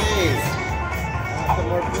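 Jackpot Blast video slot machine playing its bonus-round music and electronic effects, with a pair of short swooping up-and-down tones at the start.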